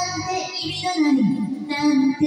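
A woman singing a Japanese rock ballad over an instrumental backing track. Her pitch dips in a slide about a second in.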